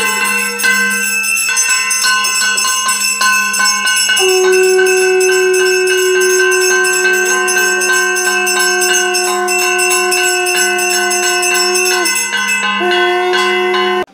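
A puja hand bell rings continuously and rapidly during an aarti, loud and steady. Over it, a long held note sounds from about four seconds in, breaks off briefly near the end, then comes back.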